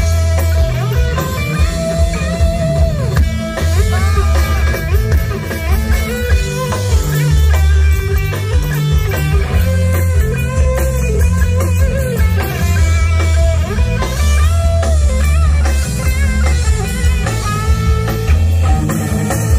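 Live rock band playing an instrumental passage: an electric guitar lead line with bending notes over bass guitar and drum kit.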